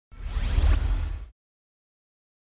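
Whoosh sound effect for a logo reveal: a rush of noise with a deep rumble under it and rising streaks, lasting about a second, then cutting off to silence.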